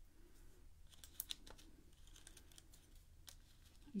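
Near silence with a few faint, short clicks and ticks from handling foam adhesive dimensionals and card stock.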